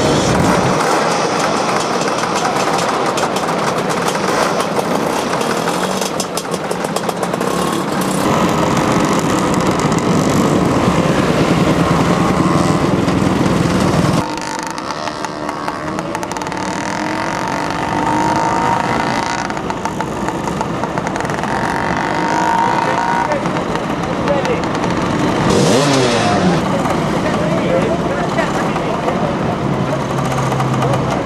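Several motor scooter engines running and revving as riders move off, with the sound changing abruptly about halfway through; one engine's pitch rises then falls away sharply about three-quarters of the way in.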